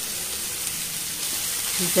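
Diced banana stem curry sizzling in a frying pan as a steady hiss, its liquid cooked down and soaked into the pieces.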